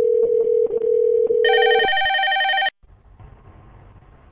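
VoIP softphone call ringing: a low steady ringback tone, joined about a second and a half in by a higher, pulsing electronic ringtone. The low tone stops, and the ringtone cuts off with a click at about two and a half seconds as the incoming call is answered, leaving a faint open-line hiss.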